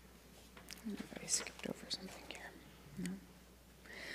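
Faint whispered speech: a few quiet, breathy words over the quiet of the room.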